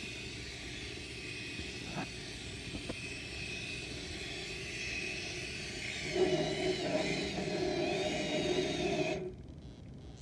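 K'NEX battery motor and plastic gear train of a spinning K'NEX spider ride whirring steadily, with a couple of light clicks. It grows louder and rougher about six seconds in, then cuts off suddenly just after nine seconds, as the motor stops.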